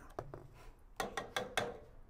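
Light clicks and knocks of cookware and utensils being handled: a couple near the start, then four quick ones about a fifth of a second apart.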